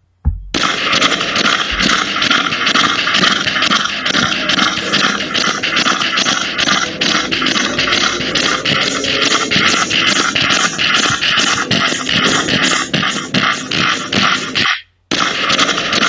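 English bulldog's loud, harsh, fluttering breathing noise (stertor), made by an overlong soft palate vibrating with each breath, a sign of brachycephalic airway syndrome. It starts about half a second in, breaks off for a moment near the end, then resumes.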